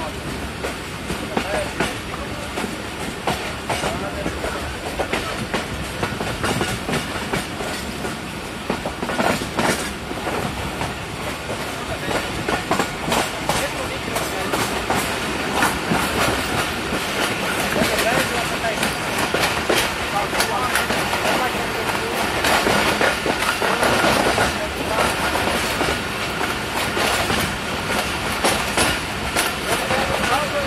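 A train running along the track, heard from on board: a steady rumble with a continual clickety-clack of wheels over rail joints, growing louder in the second half.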